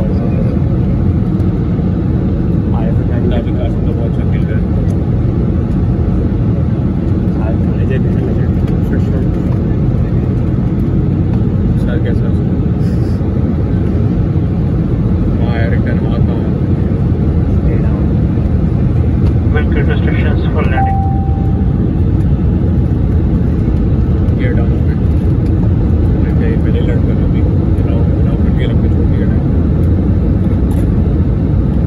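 Airbus A320 cabin noise: a steady, low-heavy rush of jet engines and airflow heard from a window seat. A brief single tone sounds about two-thirds of the way through.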